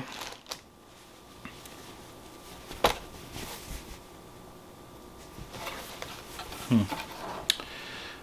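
Soft rustling of a cotton T-shirt and its packaging as it is taken out of the box and unfolded, with one sharp tap about three seconds in.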